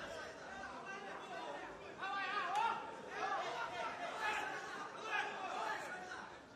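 Several people's voices shouting and calling out over one another, growing louder about two seconds in.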